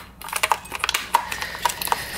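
Irregular small plastic clicks and rattles as a cruise control switch and its wiring are worked through a hole in the back of a steering wheel frame.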